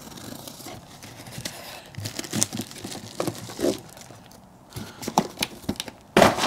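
A cardboard box being unpacked: packing tape slit with a knife, and cardboard flaps and plastic wrapping crinkling and rustling in irregular bursts as the parts are pulled out.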